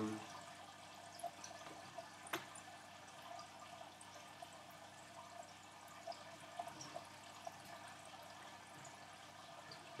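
Quiet room tone with a steady faint hiss and the small ticks of glossy photo cards being handled and shuffled, with one sharp click about two and a half seconds in.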